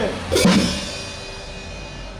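A single drum-and-cymbal hit: a sharp cymbal crash together with a low drum thud, the cymbal ringing on and fading away over the next second and a half.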